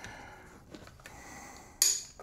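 Wooden Danish frame saw being handled as its tension is let off: faint knocks and rubbing of the wooden frame and toggle stick. A brief, louder hiss-like burst comes just before the end.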